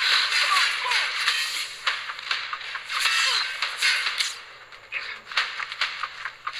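Action-film gunfire sound effects: a dense volley of shots and impacts over a hiss, with short whizzing ricochet-like glides. The fire thins out after about four seconds into scattered single shots.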